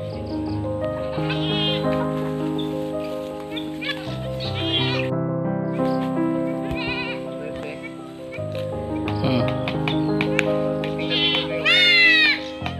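A goat kid bleats in short, wavering cries several times, the loudest right at the end, over background music with long held notes.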